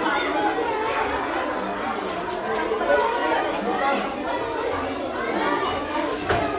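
Many children chattering at once in a large hall, overlapping voices with no one speaker standing out.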